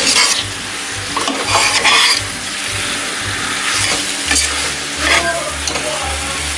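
Mutton pieces frying and sizzling in thick masala in a pressure-cooker pot. A metal slotted spatula scrapes and stirs through them in several strokes.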